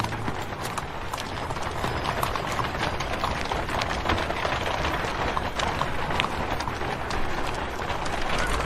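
Horse's hooves clip-clopping on stone paving as it draws a wooden cart, with the general bustle of a busy street around it.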